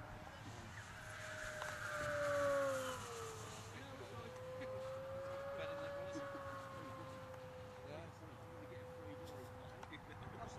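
Electric motor and propeller of a HobbyKing Moray mini pylon racer whining steadily at high power in flight. The whine swells to its loudest about two and a half seconds in, then dips in pitch and holds steady.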